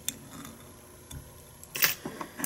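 Faint clicks and handling noise of a whip finisher tool wrapping tying thread round a fly hook in a vise, with one short, louder rustle near the end.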